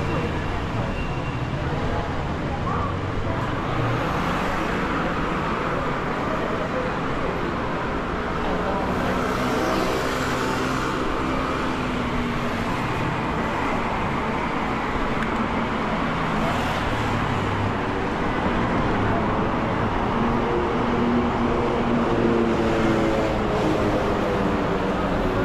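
Steady city street traffic noise from cars on the road alongside, with vehicles passing about ten seconds in and again around seventeen seconds. Pedestrians' voices can be heard in the background.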